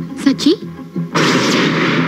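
A voice briefly, then a sudden loud burst of noise about a second in that holds for over a second: a sound effect in a film soundtrack.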